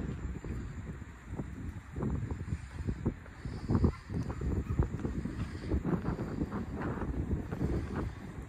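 Wind buffeting the microphone in uneven gusts, heard mostly as a low rumble that surges and falls.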